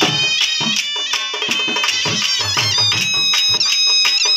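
Live Punjabi folk music: shehnais playing a melody over steady dhol drumbeats. The shehnais move to long held notes about halfway through.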